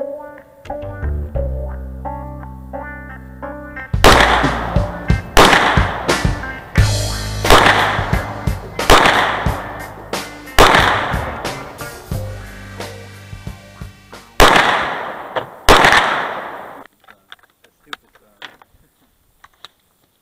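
Ruger SR22 .22 LR semi-automatic pistol fired about ten times at an uneven pace, each shot sharp with a short ring-out. Background music with plucked strings and bass plays under the shots, which start about four seconds in and stop a few seconds before the end.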